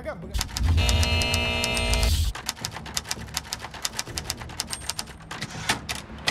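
A short musical sting with a deep bass hit and a held chord. Then, from about two seconds in, rapid manual-typewriter key clacks, about ten a second.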